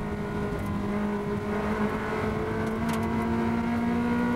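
Ferrari 360 Challenge race car's V8 engine at high revs, heard from inside the cockpit: one steady note that climbs slowly in pitch in the second half as the car accelerates.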